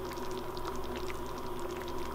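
Stew boiling in an open slow cooker on high, small bubbles popping in quick, irregular ticks over a steady low hum.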